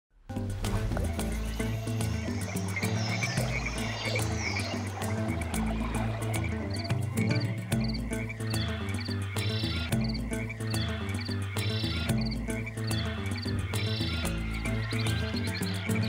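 Frogs calling in groups of short, repeated high chirps and clicks, layered over background music with low sustained notes that change every couple of seconds.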